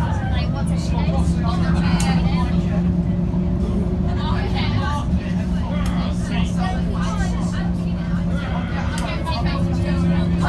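Interior sound of a school bus on the move: its diesel engine runs with a steady low hum, its note shifting slightly about halfway through, while passengers' voices chatter indistinctly over it.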